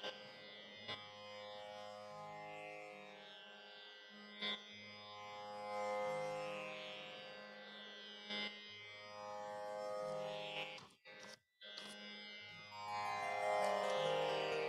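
Quiet instrumental introduction to a qawwali: sustained, droning notes that shift every second or two over held bass notes, with a few light taps. The sound drops out briefly about eleven seconds in.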